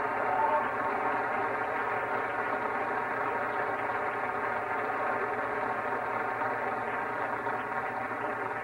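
Audience applause, a steady wash of clapping just after a song ends.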